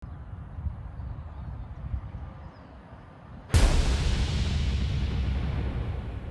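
Low outdoor rumble, then about three and a half seconds in a sudden loud cinematic boom sound effect that dies away over a couple of seconds.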